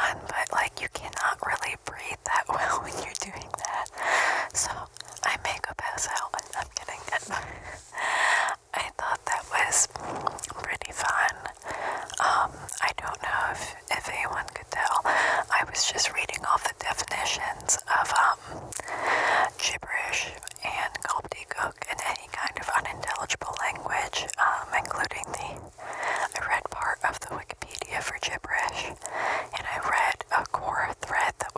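Close-miked whispering kept deliberately unintelligible, a steady stream of soft breathy syllables with small mouth clicks between them.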